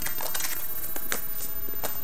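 A few light clicks and taps of trading cards being handled on a playmat, scattered across the two seconds, over a steady background hiss.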